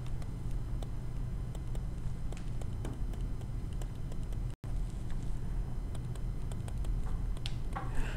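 Faint light taps and scratches of a stylus writing on a tablet screen, over a steady low hum; the sound cuts out for an instant about halfway through.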